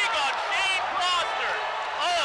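A play-by-play commentator's voice calling the action over steady crowd noise.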